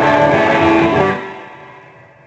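A guitar chord struck hard and left to ring, dying away after about a second and a half.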